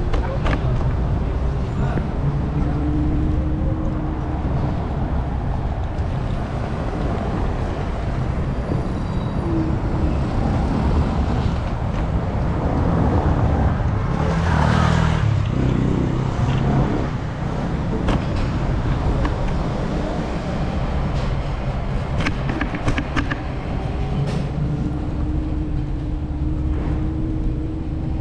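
City street traffic at night: a steady rumble of car engines and tyres, with one car passing close about halfway through.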